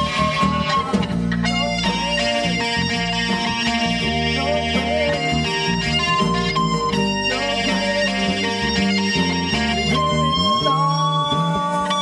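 Live worship band playing, with guitars to the fore over keyboard and bass, as a continuous sustained passage of music.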